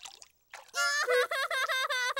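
A small child's high, wavering whimper, voicing a cartoon toddler piglet, starting nearly a second in and trembling in quick repeated dips. It is a reluctant reaction to being lowered into the pool water for the first time.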